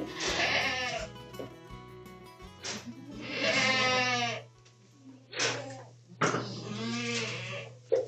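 Goats bleating: four wavering bleats, the longest and loudest about three seconds in, over a steady low hum.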